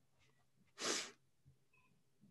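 A single short, sharp breath noise from a person, about a second in.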